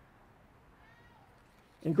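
Near silence in a large room, with a faint, brief high-pitched squeak that rises and falls about a second in. A man's voice starts near the end.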